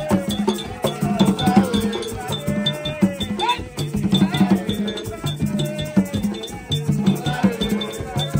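Haitian Vodou ritual music: an iron bell struck with a metal rod keeps a steady, fast ticking pattern over hand drums, while a group of voices sings.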